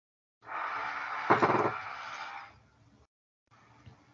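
A burst of hiss-like noise on the video-call audio, lasting about two seconds, with a brief louder knock about a second in.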